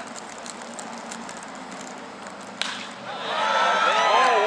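A baseball bat hitting the pitched ball with one sharp crack about two and a half seconds in, followed by the crowd cheering and shouting, louder than the crack.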